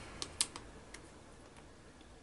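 A few light clicks from handling a plastic squeeze bottle of PVA glue, the loudest about half a second in, then quiet room tone.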